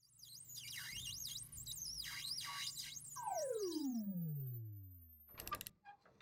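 Electronic synthesized tones: rapid warbling high-pitched sweeps, rising and falling several times a second, then a long downward glide in pitch over about two seconds. A brief cluster of clicks follows near the end.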